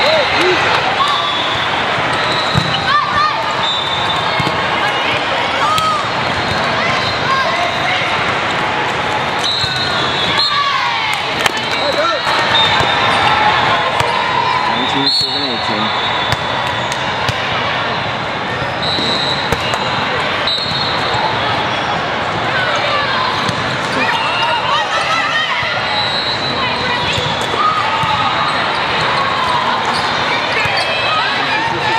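Constant din of a large indoor hall full of volleyball games: sneakers squeaking on the courts, sharp slaps of balls being hit and bouncing, and many voices chattering and calling out throughout.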